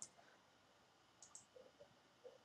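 Near silence, with a couple of faint computer mouse clicks a little over a second in.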